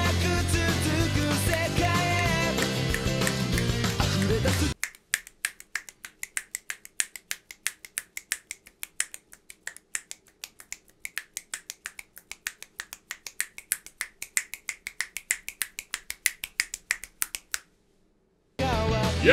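Anime opening-theme music for about the first five seconds, then it cuts off and fingers snap in a quick, steady rhythm, about five snaps a second, stopping just before the end.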